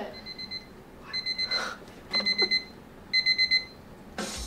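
Electronic alarm beeping in four short bursts of quick, high-pitched beeps, about one burst a second.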